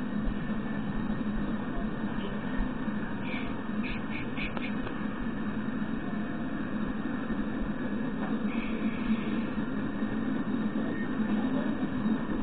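Steady rumble of freight cars, boxcars then tank cars, rolling past on the rails, with a few short higher squeaks a few seconds in.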